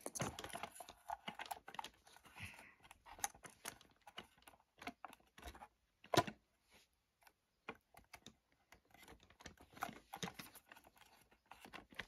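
Handling noises: a paper label rustling and fingers clicking and tapping against a plastic model locomotive body, in small irregular clicks with one louder knock about six seconds in.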